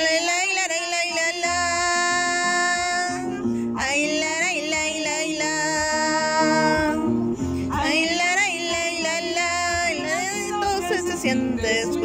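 Live acoustic guitar with a woman singing three long held notes with vibrato, each about three seconds, over plucked guitar chords.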